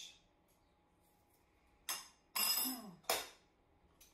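A woman clearing her throat about halfway through, in two short rough bursts with a brief voiced part between them. Before that there is only quiet kitchen room tone.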